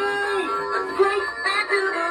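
Big Mouth Billy Bass animatronic singing fish playing a song: a sung melody with backing music through its small built-in speaker, a held note giving way to a run of quickly changing notes about half a second in.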